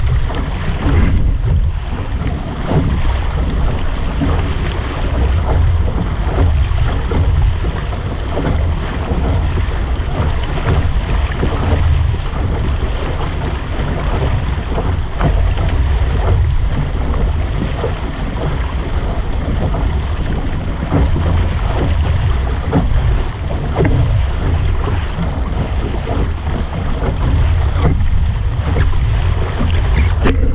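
Wind buffeting the microphone of a camera mounted on a Laser dinghy sailing through chop, with water rushing and splashing along the hull. The wind rumble is heavy and unbroken, and the water noise comes in uneven surges.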